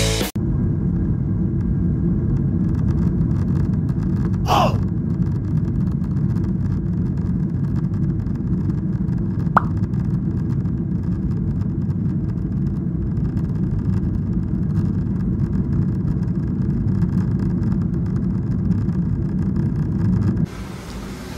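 Jet airliner cabin noise while on the runway: a steady low rumble from the engines, with a brief hiss about four and a half seconds in and a single sharp click near the middle.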